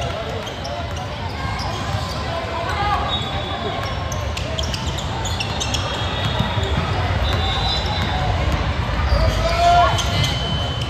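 A basketball being dribbled on a hardwood court with sneakers squeaking in short high chirps, over the steady chatter of spectators' voices.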